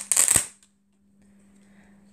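Laminated picture cards being handled and pulled off a laminated board: a brief crackling rustle with a tap, lasting about half a second.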